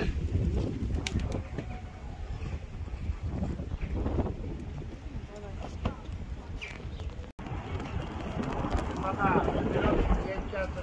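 Wind buffeting the microphone in low gusty rumbles, with indistinct voices of people talking in the background.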